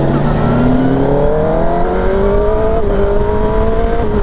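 Kawasaki ZX-10R's inline-four engine accelerating hard, its pitch climbing steadily, dipping once at an upshift about three seconds in, then climbing again, with wind rush building as speed rises.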